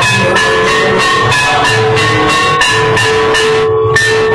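Mangala aarti music: bells and cymbals struck in a steady rhythm of about three strokes a second over drums and sustained ringing tones. The strikes stop just before the end.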